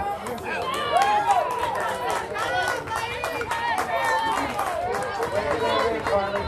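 Several high-pitched girls' voices talking and calling out at once, overlapping throughout.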